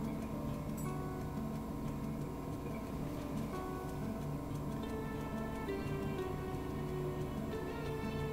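Background music: a soft instrumental of held notes that shift in pitch, at a steady level.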